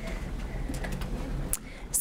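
Low steady room rumble with faint shuffling and handling noise, then a few sharp clicks near the end.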